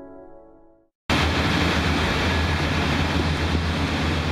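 Soft ambient music fades out in the first second. After a brief silence, a loud, steady low hum with an even rushing noise and a faint high whine cuts in: foundry machinery running around a tilting gold-melting furnace as it pours molten gold into a row of ingot moulds.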